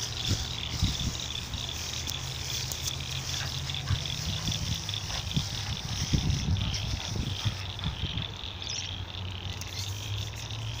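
Tall grass rustling and brushing as a dog moves and rolls through it, with irregular low thumps that are busiest around six to seven seconds in. A steady high-pitched drone runs underneath.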